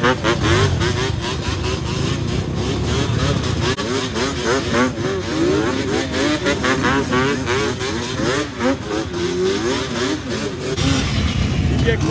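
Several dirt bike and four-wheeler engines revving up and down, overlapping one another throughout.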